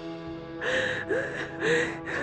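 A woman crying, with three gasping sobs in quick succession in the second half, over background music of steady held notes.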